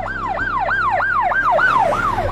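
Electronic emergency siren in a fast yelp, its pitch rising and falling about four times a second.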